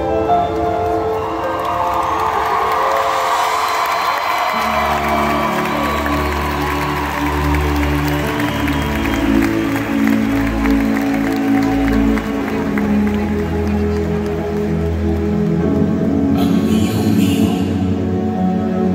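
A live band plays slow music with long held chords, and a deep bass comes in about four and a half seconds in. A crowd cheers over it during roughly the first half.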